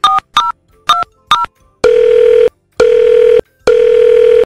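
Telephone dialing sound effect: four short keypad beeps, each two tones at once, then long telephone ringing tones that repeat with short gaps.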